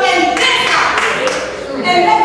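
A preacher's voice through the church microphone, with several hand claps.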